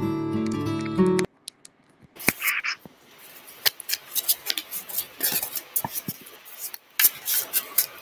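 Acoustic guitar music that cuts off suddenly about a second in, followed by a string of scattered clicks and rustles as a device is handled while it is plugged in to charge.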